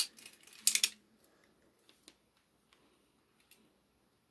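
Metal finger blades of a leather Freddy Krueger glove clicking against each other as the worn glove's fingers flex: a quick run of sharp clicks in the first second, then a few faint ticks.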